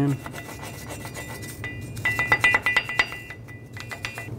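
Hand wire brush scrubbing surface rust off the steel front wheel hub of a Chevy Silverado 2500HD, with rapid scratching strokes that grow louder about halfway through.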